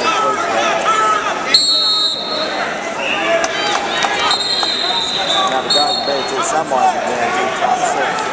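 Spectators and coaches talking and shouting in a gym around a wrestling mat, with a sharp knock about a second and a half in and three short, steady, high-pitched tones.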